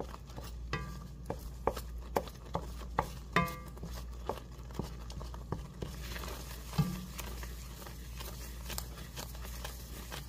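A wooden spoon stirring a boiling milk and cream cheese sauce in a metal pan, with irregular knocks and scrapes of the spoon against the pan, about one or two a second. Two knocks early on ring briefly off the metal.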